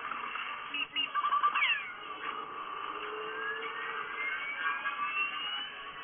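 Film soundtrack playing from a screen: cartoon sound effects, with short squeaky calls about a second in and a long, slowly rising whistle through the second half.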